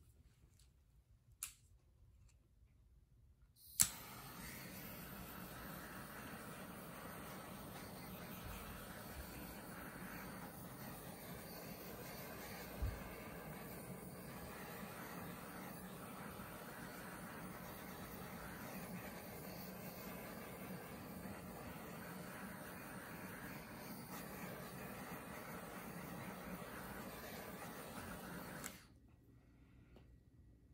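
Small handheld gas torch lit with a sharp click of its igniter about four seconds in, then the steady hiss of its flame as it is passed over wet acrylic pour paint. The hiss cuts off suddenly near the end.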